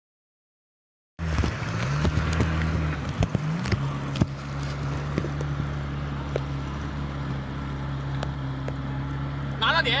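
Rescue boat's outboard motor running at a steady pitch after a few brief shifts in its note, over a hiss of wind and water with scattered knocks. A man calls out near the end.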